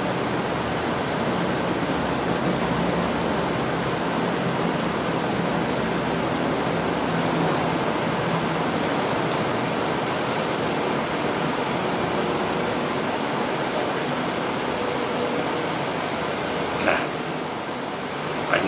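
A steady, even hiss like rushing air, with one short click about a second before the end.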